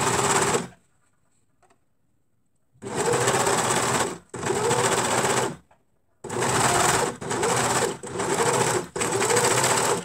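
Overlock machine (serger) sewing a seam, run in bursts under the foot pedal. A short run stops just after the start, and after a pause of about two seconds come a string of runs of about a second each with brief gaps between, the last one stopping at the end.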